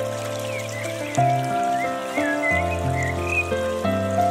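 Calm instrumental relaxation music holding long, soft chords that change every second or so. Over it, a series of short chirping calls that rise and fall starts about half a second in and runs until near the end.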